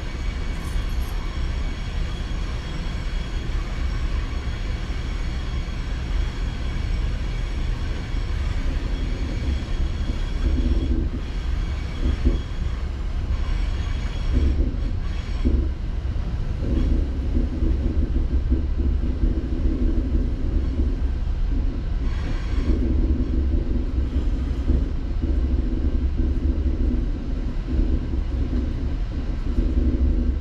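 Inside a Metrolink commuter train coach in motion: a steady rumble of wheels on rail, with a humming drone that joins about halfway through and a few short knocks.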